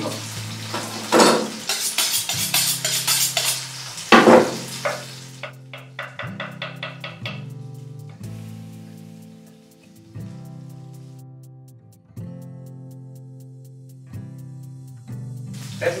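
Chef's knife chopping mushrooms on a wooden cutting board in quick repeated taps, over pork fillet sizzling as it sears in hot oil, loudest in the first five seconds or so. Soft background music with held notes runs underneath.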